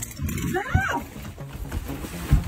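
A drawn-out whining groan from a woman, rising and falling in pitch about half a second in, with a soft thump from kicking about on a bed under a fur blanket. Light background music runs underneath.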